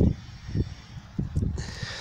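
Low rumbling thumps on the phone's microphone, several in two seconds, as the camera is moved; a faint hiss lies under them.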